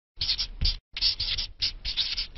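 Marker pen scratching across a writing surface in a quick run of short strokes, with a brief pause just before a second in, as a logo is written out by hand.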